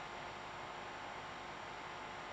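Faint, steady hiss with a light hum: the room tone of a seminar room, with no speech and no distinct events.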